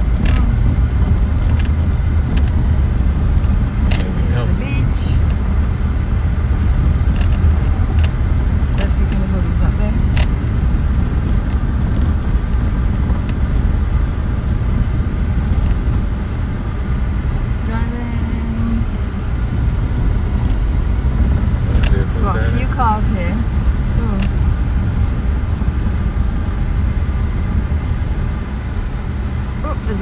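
Car cabin noise while driving slowly: a steady low rumble of the engine and tyres on the road, heard from inside the car.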